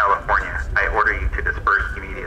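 Speech: a man's voice giving a police order to disperse, sounding band-limited like a loudspeaker, over a steady low rumble.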